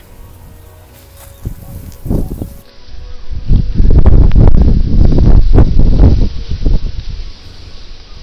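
Loud rumbling wind and handling noise on an outdoor phone microphone, with rustling. It swells from about three seconds in and eases off near the end.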